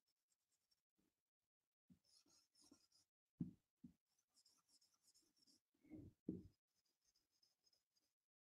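Faint marker pen drawing strokes on a whiteboard: several short stretches of scratchy squeaking as lines are drawn. A few soft knocks come about halfway through and again a little later.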